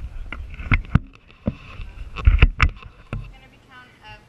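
Irregular knocks and heavy thumps close to the microphone, about eight of them, loudest in a quick cluster a little past halfway. A brief voice comes in near the end.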